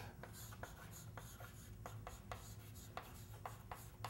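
Chalk on a blackboard while writing: a faint string of quick, irregular taps and scrapes, about four a second.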